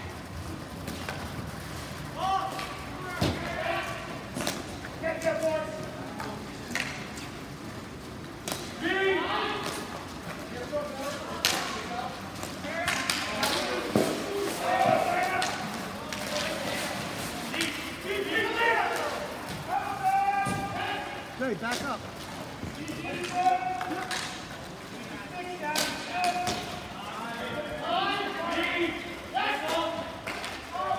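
Voices calling and shouting across a ball hockey rink, with frequent sharp clacks and thuds of sticks and the plastic ball, some hitting the boards.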